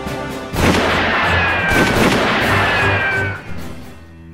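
A short bit of music, then a sudden loud burst of noise about half a second in that dies away over roughly three seconds, with two high whistling tones sliding slowly down through it: a blast-like sound effect for the production-company logo.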